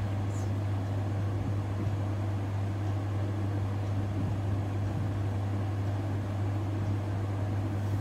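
A steady low hum running at an even level, with a faint hiss above it.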